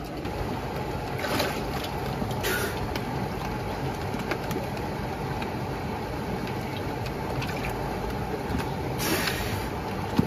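Steady rushing of a flowing mountain river, with a few short splashes of water about a second in, at about two and a half seconds, and near the end as a wader moves in it.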